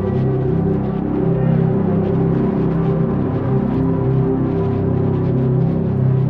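Sampled guitar pad from 8Dio Emotional Guitars Pads, the Ecstasy patch, played as held chords from a keyboard: a thick, sustained drone that is not static but has life to it, its texture shifting all the while.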